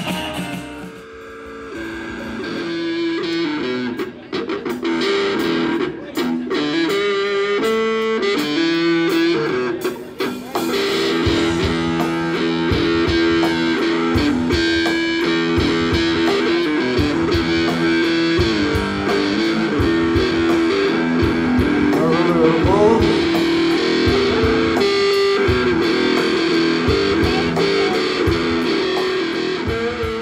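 Live blues played on an electric guitar, a Stratocaster-style guitar through Fender amps, picking a lead line. Drums come in about a third of the way through and keep a steady beat.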